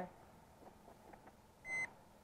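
Handheld breathalyzer giving one short, high beep near the end, marking the end of the breath sample; the reading is zero, negative for alcohol.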